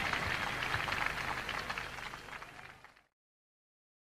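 Crowd applause with a fine crackle, fading out and cutting off about three seconds in.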